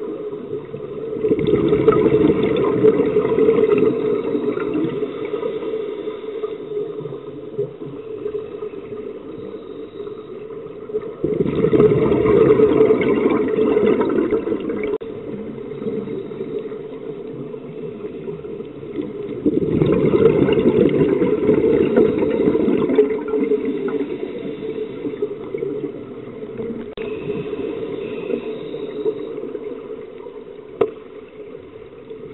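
Scuba breathing heard underwater: three long rushes of exhaled bubbles from a regulator, each about three seconds long and coming every eight to ten seconds, with a lower hiss between them.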